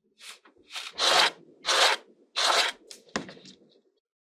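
Fingers pressing and rubbing kinetic sand down into a plastic mold: a run of gritty, rustling strokes about two-thirds of a second apart, with a short sharp click near the end.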